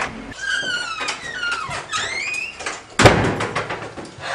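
A house front door squeaking on its hinges as it swings, a wavering squeal that falls and then rises in pitch, then shutting with a loud bang about three seconds in.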